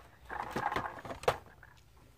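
Plastic Lego pieces being handled: a few light clicks with soft rubbing and rustling in between, in the first half or so.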